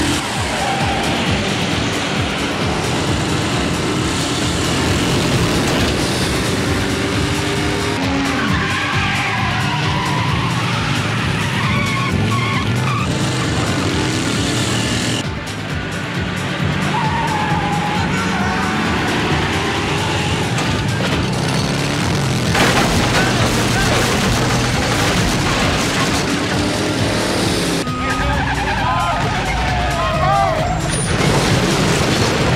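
Motorcycle and car engines revving with tyres squealing in a chase, over action music.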